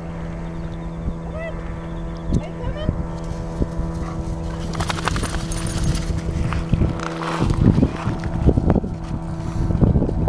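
Footsteps crunching on a pebble shore, denser and louder in the second half, with wind buffeting the microphone and a steady low hum underneath.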